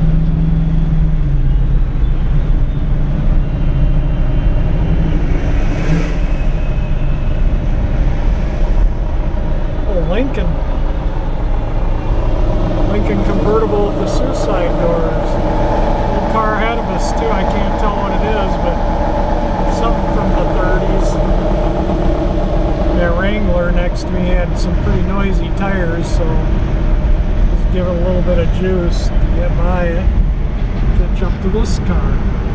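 1959 Chevrolet Bel Air driving at low speed, heard from inside the cabin: a steady low engine and road rumble, with a vehicle passing about 6 seconds in. From about halfway through, voices or music are also heard over the rumble.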